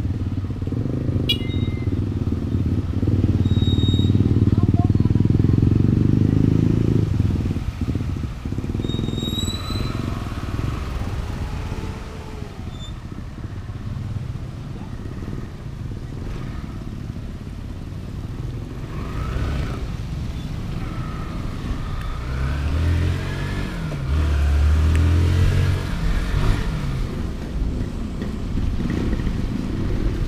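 Motorcycle engine pulling away and riding on, its pitch rising and falling with the throttle and gear changes. It is loudest twice: a few seconds in and again near the end.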